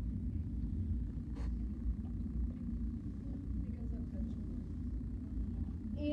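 Steady low rumble of classroom room noise, with faint murmured voices and a single light click about a second and a half in.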